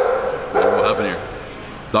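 A man's closed-mouth "mmm" sounds of enjoyment while chewing, wavering and falling in pitch about half a second in.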